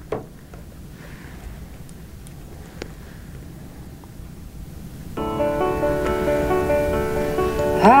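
A sharp click as the external speaker's plug goes into the iPad, a few faint handling ticks, then about five seconds in a music track begins playing through the external speaker: sustained instrumental chords, with a singing voice entering near the end.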